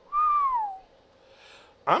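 A man whistles one short note through pursed lips that rises slightly and then slides down in pitch, lasting under a second.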